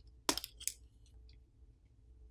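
A few small, sharp plastic clicks in the first second: a plastic pry tool popping a press-fit flex-cable connector off a smartphone's circuit board.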